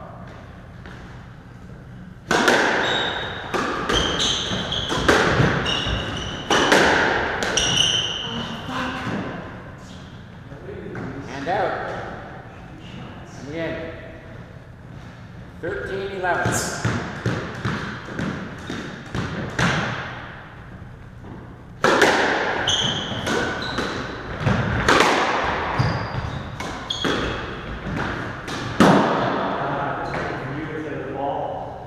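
Squash rallies on a hardwood court: a squash ball smacked by racquets and hitting the walls in quick runs of sharp hits, with short squeaks of court shoes on the wooden floor. There are pauses between the runs.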